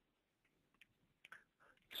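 Near silence with a few faint, short clicks in the second half, just before speech resumes.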